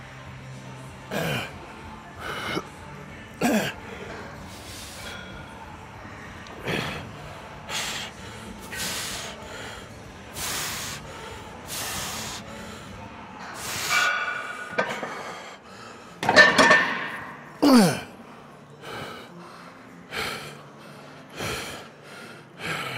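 A man breathing hard through a set of heavy chest presses: short, forceful exhales every second or two, several turning into strained grunts that fall in pitch. The loudest grunts come about three-quarters of the way in.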